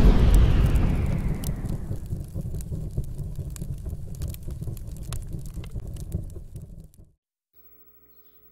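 Cinematic boom sound effect of a fiery logo reveal: loud at the start, then a deep rumble that dies away slowly and cuts off to silence about seven seconds in.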